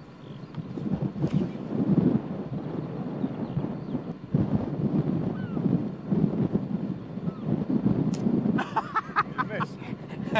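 Wind buffeting the microphone, a gusty low rumble that rises and falls. Near the end a voice comes in.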